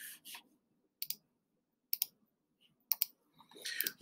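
Computer mouse clicks: one click near the start, then three double clicks about a second apart.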